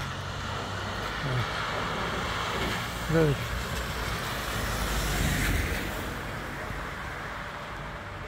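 A car driving past on a wet road, its tyre noise on the water swelling to its loudest about five seconds in, over steady traffic noise.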